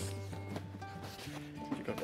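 Soft background music with steady held notes.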